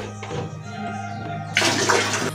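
Liquid disinfectant poured from a plastic bottle into a toilet bowl, a brief splash into the bowl water starting about one and a half seconds in, over steady background music.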